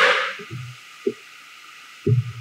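Handling noise from a lectern microphone being adjusted by hand: a sudden rustling bump, then two short low thuds.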